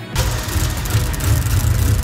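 A car engine rumbling loudly, cutting in suddenly just after the start, with a hiss above it, over background music.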